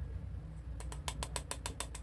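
Plastic loose-powder jar clicking in a quick regular run, about eight small clicks a second, starting about a second in as its lid or sifter is twisted, over a steady low hum.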